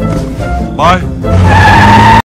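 A car pulling away with a loud tyre squeal over an engine rumble, starting about a second and a half in, with film score underneath.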